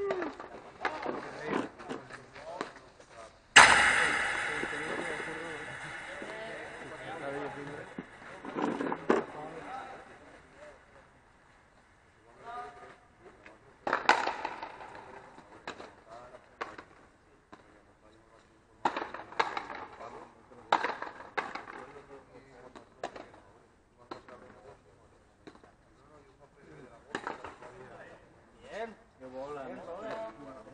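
Frontenis rubber ball knocked by rackets and off the frontón wall and floor in sharp, irregular knocks. About three and a half seconds in, one much louder sudden bang rings on and dies away over several seconds.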